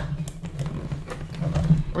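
Faint scattered clicks and rustles of hands handling packaging inside a cardboard toy box, over a steady low hum.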